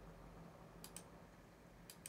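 Near silence with a faint low hum and a few faint clicks, about three, from clicking on the laptop to close windows.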